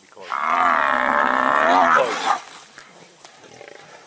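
Cape buffalo bellowing in distress under a lion attack: one long, loud call of about two seconds that drops in pitch as it ends.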